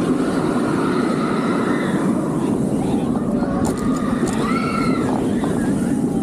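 Bolliger & Mabillard floorless steel roller coaster train running at speed, heard from a front-row seat: a steady, loud rumble of wheels on the track with rushing wind, wavering higher calls over it and a few sharp clicks about four seconds in.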